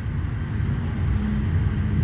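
Low steady background rumble with no speech, and a faint hum joining in about halfway through.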